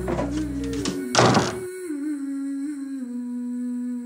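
A door slams shut about a second in, over soft background music that holds a low sustained note.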